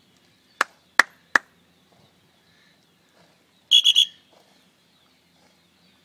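Three sharp clicks in quick succession about half a second in, then a short, shrill, fluttering whistle blast a little past the middle.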